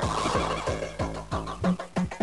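Hardcore techno playing from a 12-inch vinyl record on a turntable: a fast kick drum at about three beats a second under a dense, distorted mid-range layer. The kick drops out briefly just before the end.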